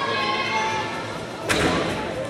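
One sharp thud about one and a half seconds in, a gymnast's feet and hands striking the springboard and vault table, over the voices in a large gym.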